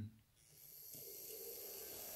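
A small neckband fan motor starting up and running, a faint steady whir with airy hiss that comes in about half a second in and holds. It is the fan that had been jammed, now turning freely after being loosened.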